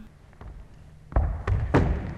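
Running footsteps on a plywood floor: quiet at first, then three heavy footfalls in quick succession from about a second in, the run-up and take-off of a kong vault over a wooden box.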